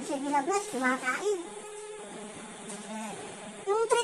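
A person's voice in short, softer phrases, speech or humming, with pauses between; no sound of the brushing stands out.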